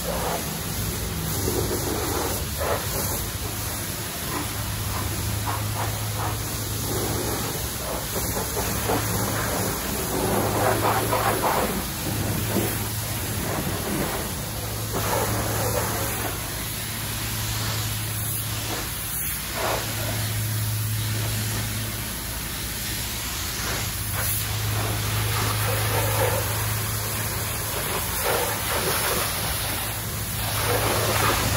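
Coin-operated car-wash pressure washer spraying water onto a van's bodywork: a steady hiss of spray whose loudness shifts as the jet moves over the panels, over a low hum that cuts out and comes back several times.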